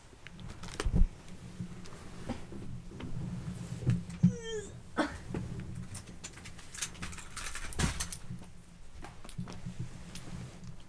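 Close-up handling noise as a person moves about and handles things by the microphone: rustling, bumps and knocks, the loudest about a second in, with a short squeak sliding down in pitch about four seconds in.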